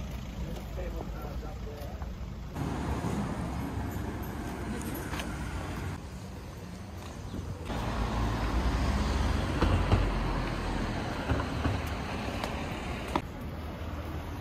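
Roadside traffic noise: cars running past on a street, with a low rumble that grows louder about two-thirds of the way through as a vehicle passes. The sound jumps abruptly a few times.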